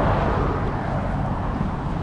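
Road traffic passing on the highway bridge: a steady rush of car and tyre noise that swells slightly and then eases.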